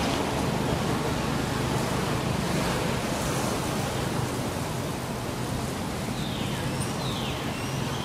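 Steady rushing wind noise on the microphone, with a few faint, high falling chirps near the end.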